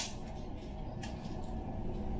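A few light clicks as BBs are pressed from a clear tube speedloader into a G&G SMC9 airsoft magazine, over a steady low rumble.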